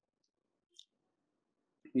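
Near silence, with one faint, brief click a little under a second in.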